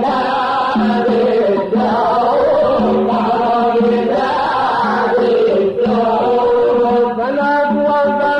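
An Arabic devotional nasheed in the Aleppine style: a sung voice chanting a winding, ornamented melody without pause.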